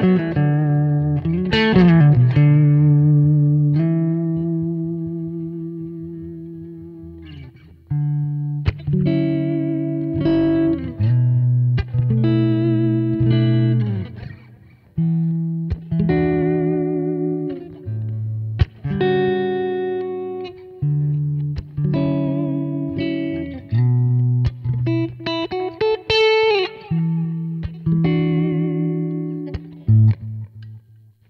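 Electric guitar played through a Kemper profile of a 1969 silverface Fender Princeton amp, with a notably bright tone. Chords ring out and fade over several seconds, then a run of strummed chords follows with short stops between them.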